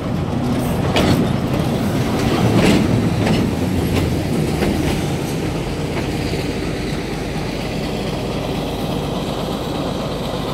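Diesel shunting locomotive passing close at low speed: a steady engine rumble, with the wheels clacking irregularly over rail joints during the first half.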